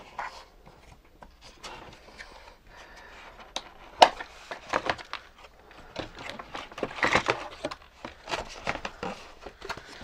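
Toy robots and remotes being cut and pulled free of a cardboard box insert: irregular rustling, scraping and clicking of cardboard and plastic ties, with a sharp click about four seconds in.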